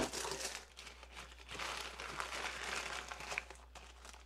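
Crinkling of plastic packaging as a poly mailer bag is handled and opened and a small plastic zip bag of parts is taken out, quiet and uneven.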